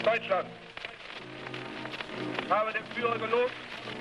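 A man making a speech in German on a crackly, hissing archival film soundtrack, with steady sustained music underneath. One phrase falls at the start and another just past the middle.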